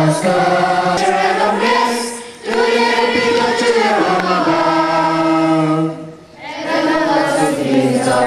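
A choir of voices singing a hymn in long held notes, phrase by phrase, with brief breaks between phrases about two and a half and six seconds in.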